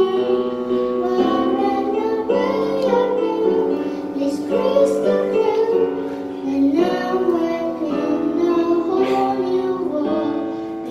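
A young boy singing a slow ballad into a microphone over instrumental accompaniment.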